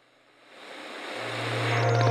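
Logo-sting sound effect: a whooshing swell that rises steadily out of silence, joined by a low steady hum about halfway through, building into the outro jingle.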